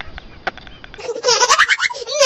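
A man laughing hard: faint breathy gasps and clicks at first, then, about a second in, a loud, high-pitched laugh in quick quivering pulses.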